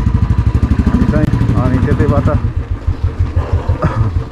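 Motorcycle engine running at low speed, a steady low throb of evenly spaced firing beats. A voice speaks over it during the first two seconds or so.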